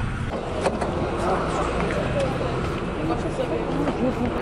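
Steady road-vehicle rumble and traffic noise with indistinct voices.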